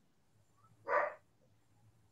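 A single short, faint dog bark about a second in.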